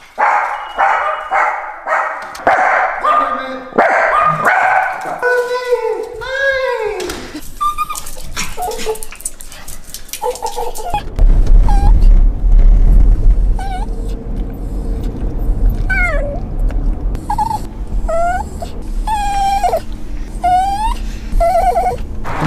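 Dogs barking and yipping excitedly. About halfway through, a steady low road rumble takes over and an Italian greyhound whines and cries in short rising-and-falling calls every second or two.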